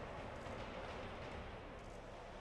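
Faint, steady background noise with no distinct sounds.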